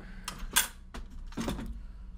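Handling plastic parts in a rotary-tool kit: a few sharp clicks and a short rattle as a small clear plastic box of sanding and cutting bits is lifted out of the molded plastic case.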